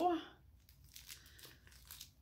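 Faint crinkling and rustling of a small plastic bag being handled and opened, with a few light ticks.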